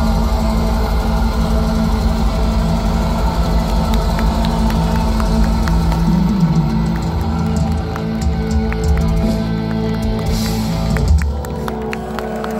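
Live black metal through a large PA: distorted guitars hold long chords over drums, with one pitch bend about six seconds in. The music stops near the end, leaving crowd noise.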